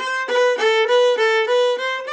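Violin played in first position with separate, detached bow strokes: about seven notes in quick succession that move back and forth between two neighbouring pitches, then step up near the end.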